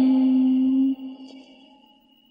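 A chanting voice holds one long steady note at the end of a phrase of Vietnamese verse chanting (ngâm), which fades out about a second in. A faint high tone lingers briefly before near silence.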